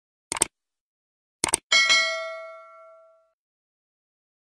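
Sound effects of a subscribe animation: two quick mouse-click sounds about a third of a second in, two more about a second and a half in, then a bright bell ding that rings and fades over about a second and a half.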